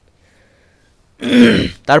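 A person clearing their throat once: a short harsh burst a little over a second in, after a brief pause.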